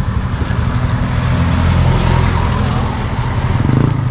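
A motor vehicle's engine running close by, a low rumble that grows louder near the end.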